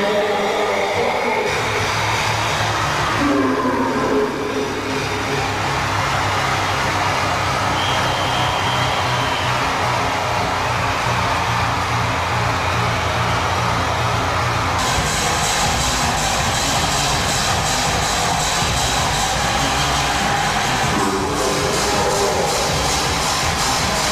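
Hardcore techno (gabber) dance music with a steady, driving beat. A brighter high layer comes in about fifteen seconds in and drops out a few seconds before the end.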